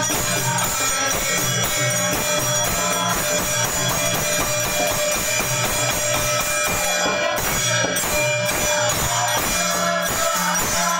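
Many pairs of small brass hand cymbals (taal) clashing together in a fast, steady devotional rhythm, over a pulsing drum beat.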